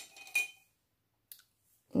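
Wooden coloured pencils clicking and clinking against each other as one is picked out of the set: a few sharp clicks with a brief ring in the first half second, then a single faint click.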